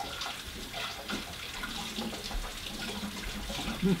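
Kitchen tap running: a steady hiss of water.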